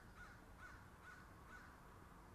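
A faint series of five short animal calls, about two a second, each a brief sliding note, over a low steady background rumble.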